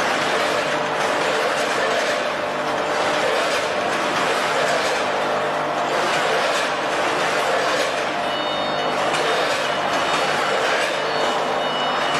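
YX-500A vertical form-fill-seal packaging machine running on a chip-bagging line, giving a steady, dense mechanical noise without pause. Faint high tones come in briefly about eight seconds in and again near the end.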